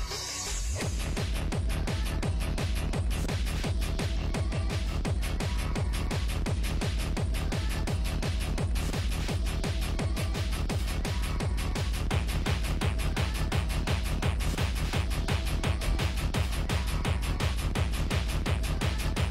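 Hard techno playing with a fast, steady kick drum and deep bass. Right at the start the bass drops out briefly under a noise sweep, then the beat comes straight back in.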